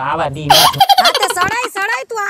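A man's voice, then about half a second in a loud, high-pitched giggling laugh that breaks into high-pitched talk.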